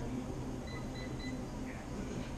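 Stationary exercise bike's console keypad beeping three times in quick succession as settings are keyed in, over a steady low hum.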